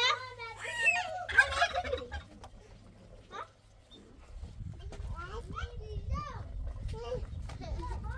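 A young child's high voice and laughter, then from about halfway a run of short, rising-and-falling high calls over a low rumble.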